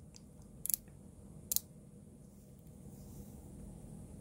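Small four-position slide switch on a circuit board clicking as it is slid between positions: a quick cluster of clicks a little over half a second in, then a single click about a second and a half in, over a faint low hum.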